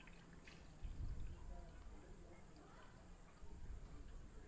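Faint trickle and drip of water running off a soaked chapati held up over a plastic bowl of water.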